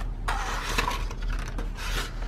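Butcher paper and sublimation transfer paper rustling as they are peeled back off freshly heat-pressed socks.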